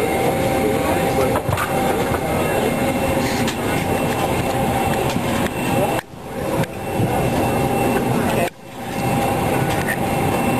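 Steady drone of a jet airliner's cabin in flight, with indistinct voices of people talking underneath. The sound drops away sharply and briefly twice, about six seconds in and again two and a half seconds later.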